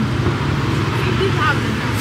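Steady low hum of background street traffic, with faint voices.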